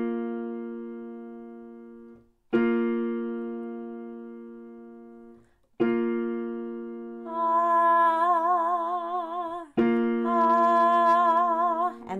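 Two notes played together on a piano, struck four times and each left to ring and fade; from about seven seconds in a woman's voice sings the higher of the two notes with vibrato, twice, over the ringing notes. It is an ear-training exercise: picking out and singing the higher note of the pair.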